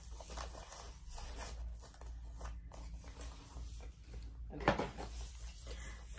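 Packaging being handled and unwrapped: soft, irregular rustling of the camera's white wrapping, with one sharper knock about three-quarters of the way through.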